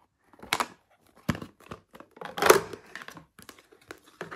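Small plastic lunchbox pots handled and knocked together: a few separate clicks and clacks with brief scraping, the loudest about two and a half seconds in.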